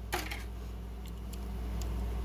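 A few light clicks and a short rustle of a small die-cast toy car and its plastic packaging being handled, over a steady low hum.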